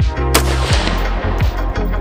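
A single shot from a V Seven ultra-light AR-15 rifle, about a third of a second in: a sharp crack with a tail that dies away over about half a second. Electronic background music with a steady beat plays throughout.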